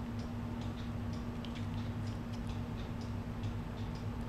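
Quiet room tone: a steady low hum with faint, scattered light ticks.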